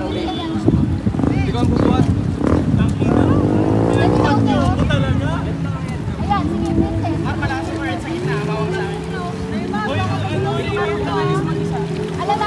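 Shallow river water running over stones, with splashing as people wade through it, under several voices chattering and calling out.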